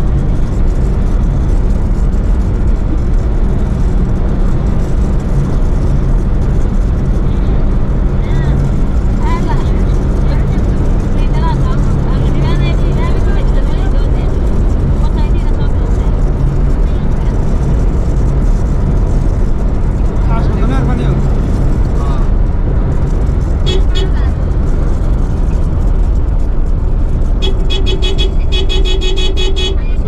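Vehicle driving at speed on an asphalt highway: a loud, steady low rumble of road, engine and wind noise. Near the end a tone sounds in quick repeated pulses, like a horn.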